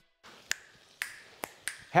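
Four sharp finger snaps with a short room echo after each, the first about half a second in and the others coming quicker towards the end.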